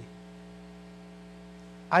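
Steady electrical mains hum from the microphone and sound system. A man's voice comes in just before the end.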